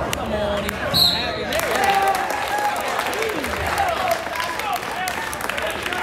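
A referee's whistle blows once, briefly, about a second in, signalling the pin. Spectators then break into cheering and clapping, with shouting voices throughout.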